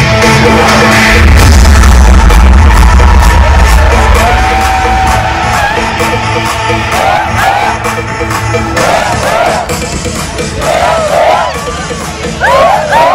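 Loud live band music with a heavy bass coming in about a second in. In the second half a crowd whoops and cheers over it.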